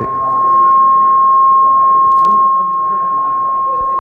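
Acoustic feedback from the hall's microphone and PA system: a loud, steady, high-pitched howl held at one pitch, with faint talk beneath it.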